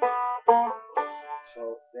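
A banjo played in a short phrase of picked notes, about one every half second, each ringing on. A man starts speaking near the end.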